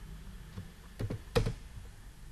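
A few keystrokes on a computer keyboard, starting about a second in, over a faint steady low hum.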